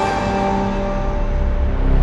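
Electronic intro music for a logo animation: held synth tones ringing on, while a deep rumbling swell builds near the end.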